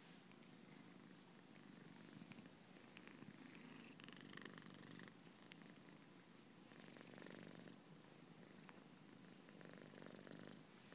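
A house cat purring quietly and steadily while it is stroked and massaged.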